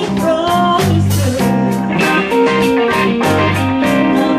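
Live blues band playing a slow minor-key blues: electric guitar lines with bent notes over bass and a steady drum beat.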